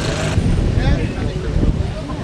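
Wind rumbling on the microphone with indistinct voices. A steady hum cuts off abruptly about a third of a second in.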